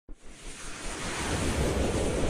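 Rushing whoosh sound effect of an animated logo intro, a noise that swells steadily louder.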